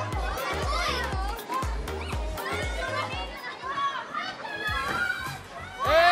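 Children shouting and laughing at play over background music with a steady bass beat; the music stops about halfway through and the children's voices carry on.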